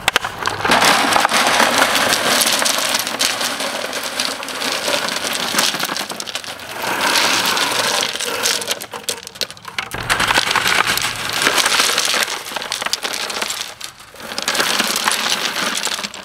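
Small rocks poured from a plastic bucket onto a wire-mesh sifting screen in a wooden frame, clattering against the mesh and against each other. The rattle comes in about four long pours with short breaks between them.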